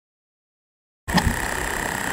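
Silence, then about a second in steady outdoor background noise aboard a small boat on open water cuts in abruptly, with a faint steady hum.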